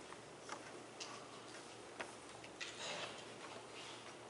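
Quiet room tone with a few faint, sharp clicks at uneven spacing, roughly one a second.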